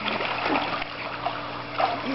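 Swimming-pool water lapping and trickling, with a steady low hum underneath.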